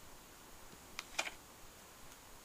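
Paper page of a printed book being handled and turned, giving two quick crisp snaps about a second in, a fifth of a second apart, over a quiet room.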